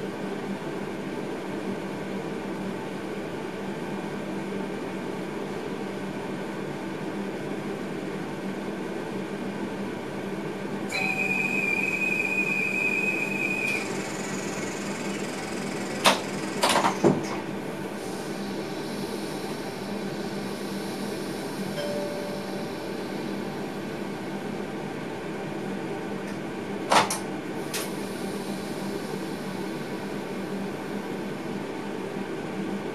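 Steady electrical and fan hum inside the cab of an electric train standing at a platform. A steady high tone sounds for about three seconds a little past the middle, and a few sharp clicks come soon after and again near the end.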